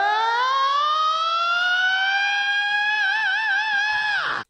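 Movie sound effect of a psychic attack: one long siren-like tone that rises steadily in pitch, then levels off and wavers during the last second.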